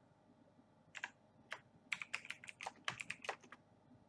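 Typing on a computer keyboard: a couple of separate keystrokes about a second in, then a quick run of keystrokes.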